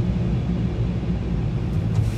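Steady low rumble and hum of car wash tunnel machinery, heard from inside the car's cabin.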